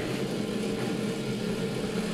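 A steady low hum made of several constant low tones, unchanging over the two seconds.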